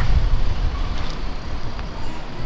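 Street traffic noise: a low, uneven rumble with no clear single event.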